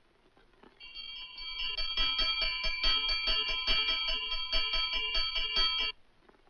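Film background music: a bright, chiming cue of held bell-like tones over a quick, even pulse. It comes in about a second in and cuts off abruptly just before the end.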